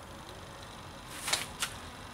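Quiet background broken by two short scuffs, about a second and a third of a second apart, near the middle: handling noise from a person moving in to the trolling motor. The electric motor itself is not running.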